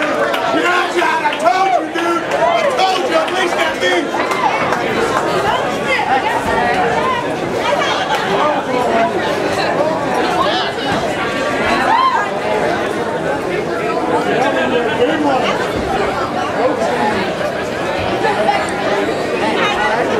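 Crowd of many people talking at once, overlapping chatter at a steady level with no single voice standing out.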